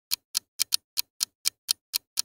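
Ticking clock sound effect, a quick run of sharp ticks at about four a second: a countdown timer for thinking over a quiz question.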